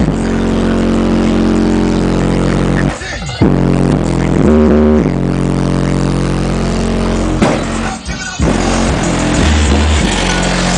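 Bass-heavy music played loud through three 15-inch Kicker Comp subwoofers in a car trunk, with long, deep bass notes. It drops out briefly twice, about three seconds and about eight seconds in.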